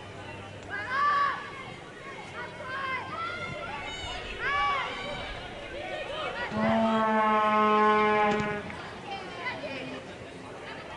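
Soccer players shouting short calls to each other on the pitch, then one long held call lasting about two seconds, the loudest sound here, about six and a half seconds in.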